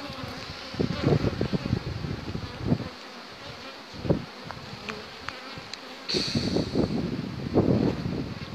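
Honeybees buzzing in numbers around open hives: calm foraging at the hive entrances, with no robbing. Irregular low bumps of handling or wind on the microphone come and go.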